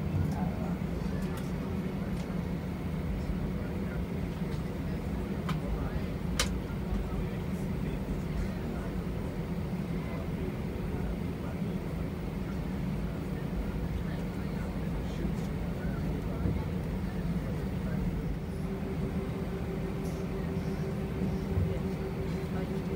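Cabin noise of an Airbus A320 taxiing: a steady low rumble of the idling jet engines and rolling airframe. There is one sharp click about six seconds in, and a steady hum joins about three-quarters of the way through.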